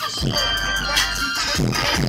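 Music with a deep bass note held for about a second, playing on a pickup truck's aftermarket car stereo and heard inside the cab.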